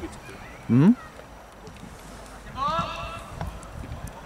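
Two short shouts: a loud yell about three-quarters of a second in that rises steeply in pitch, then a higher, fainter call around three seconds in, over steady open-air background noise.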